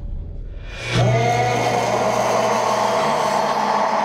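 Horror trailer sound design: a low rumble, then about a second in a low droning tone swells in and holds, with higher layered tones above it. Near the end the low tone steps up slightly in pitch.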